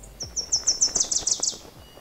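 Cartoon bird-chirp sound effect for an animated logo transition: a fast run of about ten short, high tweets over roughly a second and a half, growing louder and stepping slightly lower in pitch before they stop.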